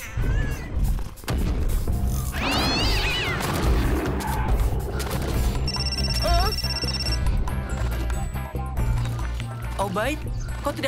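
Cartoon action soundtrack: background music with scattered thuds, a wavering cry about two and a half seconds in, and a fast, high electronic beeping near the middle.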